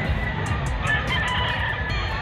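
A rooster crowing once, from about a second in to near the end, over background music with a steady low beat.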